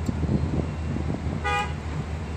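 A car horn gives one short beep about one and a half seconds in, over a steady low hum of an idling vehicle engine.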